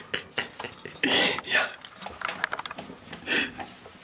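Hushed whispering and rustling, in short hissy bursts with scattered small clicks and knocks.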